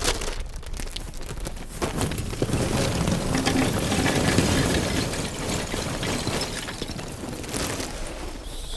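Charcoal poured into a perforated metal charcoal pan: a dense clatter of many small pieces that builds about two seconds in, is loudest around the middle and thins out toward the end.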